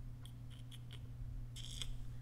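Four light, quick clicks at a computer keyboard or mouse, then a longer clatter of clicks near the end, over a steady low electrical hum.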